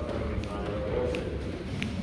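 Lobby ambience: a faint voice in the background over a steady low rumble, with two light clicks.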